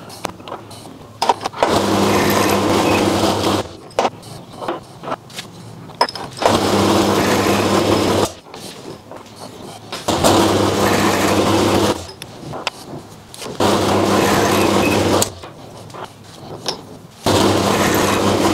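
Milling machine cutting the flats of a small hex with an end mill, in five steady passes of about two seconds each, with clicks and knocks between them as the collet block holding the part is turned to the next flat.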